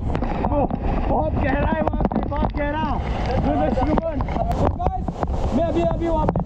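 Waterfall water splashing and gurgling around a wet camera held at the surface of the plunge pool, with a constant rush and rumble underneath and many short bubbling tones.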